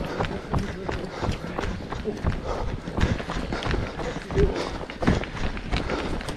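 Running footsteps of several runners on a tarmac path, a steady beat of about three footfalls a second.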